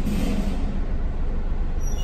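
Chevrolet Camaro engine idling, heard from inside the cabin as a steady low rumble.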